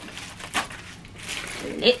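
Plastic mailer bag crinkling as it is cut and pulled open with scissors, with one short sharp crackle about half a second in.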